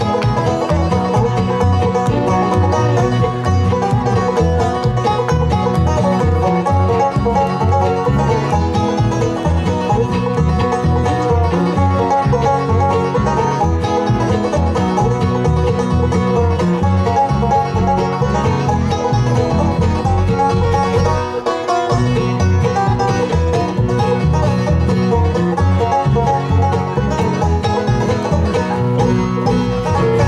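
Live bluegrass band playing an instrumental passage, the five-string banjo featured up front over acoustic guitar, fiddle and upright bass, with a brief drop in the low end a little after two-thirds of the way through.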